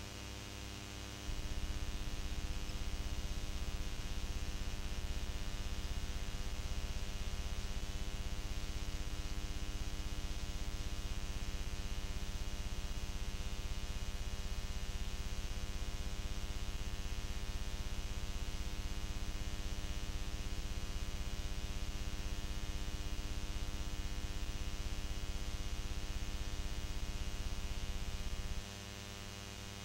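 Electrical mains hum and buzz on an old videotape's audio track, with no programme sound. About a second in it steps up to a louder, rougher low buzz that holds steady.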